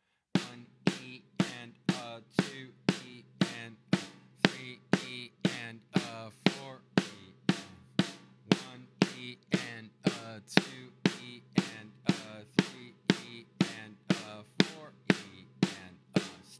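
Snare drum played with sticks in double strokes, right-right-left-left in sixteenth notes: a steady, even run of stick strokes.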